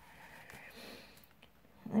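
Faint rustling of packaging being handled while someone tries to break the seal on a makeup brush set, with no sharp clicks or tearing.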